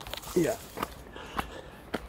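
Footsteps of a person walking on a concrete path, a short step sound about every half second.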